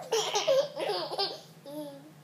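A toddler laughing in quick, high-pitched bursts, then a short, lower held vocal sound near the end.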